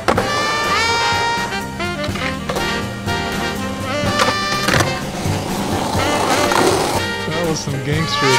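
Skateboard on concrete: wheels rolling, sharp pops and landings, and the board grinding along a concrete ledge, mixed with loud background music.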